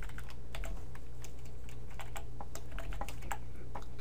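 Typing on a computer keyboard: a quick, irregular run of key clicks, several a second, over a steady low hum.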